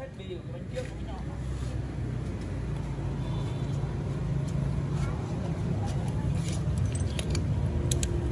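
A motor vehicle's engine rumbles low and steadily, slowly growing louder, with a few light clicks near the end.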